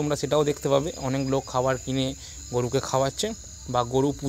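A man talking nearby in short phrases, with a steady thin high-pitched whine in the background.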